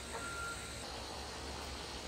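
Low, steady background noise with a faint hum and no distinct events.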